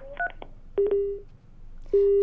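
Telephone line tones on a broadcast phone hookup: short blips and a click, then two steady beeps about a second apart. The call to the phone-in caller has dropped and the line has been lost.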